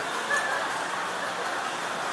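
Steady background noise of a busy indoor public space, with faint, indistinct voices.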